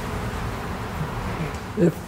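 A steady low buzzing hum that stops near the end.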